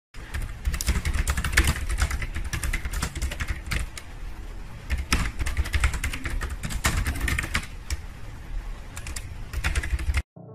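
Fast typing on a low-profile computer keyboard: a dense, irregular run of key clicks, thinning out briefly a couple of times.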